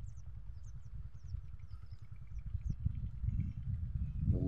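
A low, uneven rumble, with faint high chirps scattered through it.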